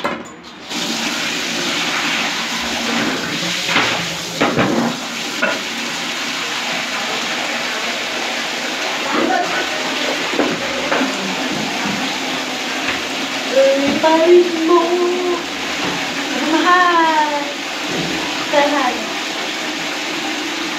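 Tap water running steadily, turned on just under a second in, with a few knocks around four to five seconds. Later a young child's voice makes a few short wordless sounds over the running water.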